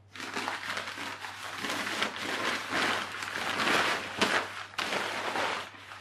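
Crumpled brown kraft packing paper being pulled out of a cardboard box, crinkling and rustling continuously.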